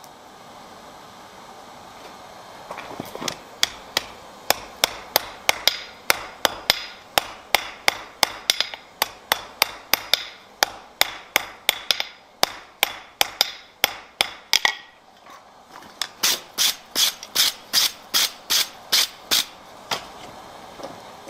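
Blacksmith's hand hammer striking a glowing iron bar on an anvil, about three blows a second, starting a few seconds in. After a short pause, a second run of brighter, sharper blows comes near the end.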